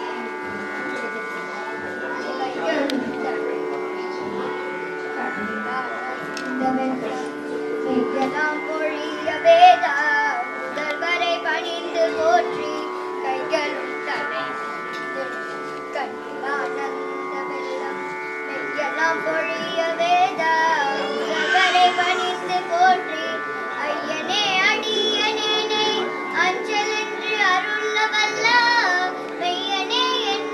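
A young girl singing a devotional hymn through a microphone over a steady drone. Her voice grows stronger in the second half.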